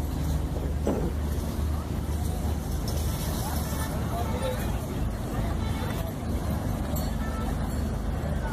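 A steady low drone under faint, indistinct voices.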